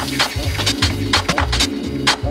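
Chicago house music playing in a DJ mix from turntables, with a steady kick drum about twice a second and hi-hats between the kicks.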